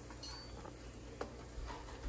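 A few faint clicks of kitchen utensils over a low steady hum.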